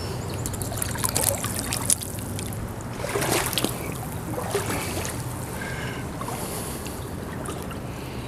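Boots wading through shallow, ice-strewn flood water, with splashing sloshes about one and three seconds in, over a steady low rumble.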